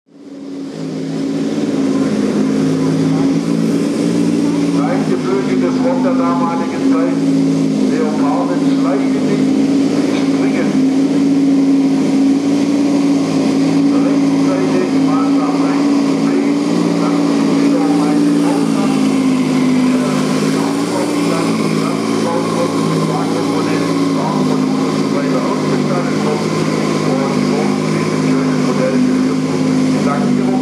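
Steady engine drone of a 1:8 scale radio-controlled Leopard 2A4 model tank driving over rough ground, its pitch wavering slightly; it fades in at the start. Voices can be heard in the background.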